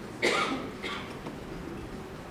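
A person coughing: a short, sharp cough about a quarter second in, then a weaker second cough just under a second in.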